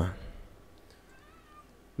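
A pause in spoken narration: the voice trails off, then near silence with a few faint, short gliding tones about a second in.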